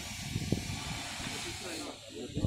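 Steady hiss with indistinct voices of people talking underneath; the hiss drops away abruptly near the end.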